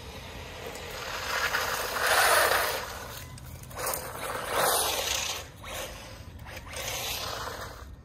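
HaiBoxing 2997A brushless RC truck driving on rough asphalt: a rasping tyre-and-drivetrain noise that swells and fades several times as it passes, loudest about two seconds in.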